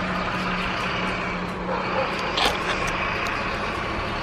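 Fire engine idling in the street below, a steady low engine hum with no siren.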